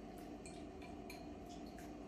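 Faint clicks of fingers and fingernails against a glass bowl as raw fish pieces are worked by hand in vinegar. A scatter of small ticks comes about three times a second over a low steady hum.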